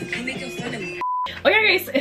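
Background music with a moving melody cuts off about a second in, followed by a short, steady electronic beep on a single pitch, then a woman starts talking.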